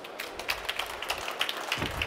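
Small audience applauding: a dense patter of hand claps that grows a little louder.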